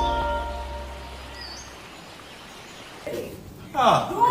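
A channel logo jingle dying away: a held bass note and ringing tones fade out over about two seconds, leaving a low hiss. About three seconds in, room noise cuts in, and just before the end there is a loud cry with a falling pitch.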